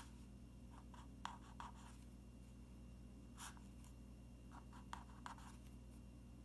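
Felt-tip marker writing on paper: a few faint, short scratching strokes, spread out with pauses between them, over a steady low room hum.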